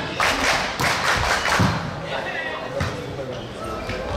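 Volleyball rally in a large sports hall: a handful of sharp thuds as the ball is struck, over players' shouts and crowd voices.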